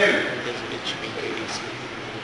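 A spoken word, then a marker writing on a whiteboard with a few short, high squeaks as it forms the letters.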